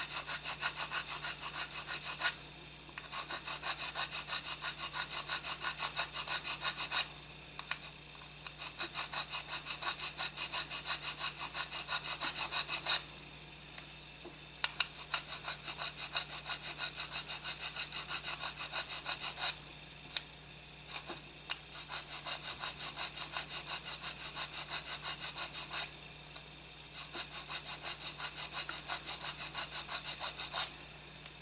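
Small hobby needle file scraping back and forth across a ribbed plastic model part, several quick strokes a second, in runs of a few seconds with short pauses between; the file is cleaning a glued seam out of the grooves.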